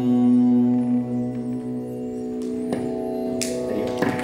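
Steady drone of held musical tones at the close of a sung Sanskrit hymn. The lowest tone drops out about halfway through, and a brief hiss comes near the end.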